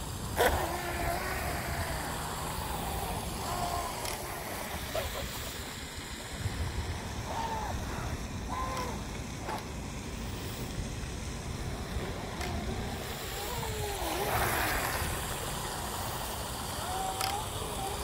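Small electric RC hydroplane with a brushless motor running out on the water, heard faintly at a distance, its pitch rising and falling with the throttle over a steady low outdoor rumble.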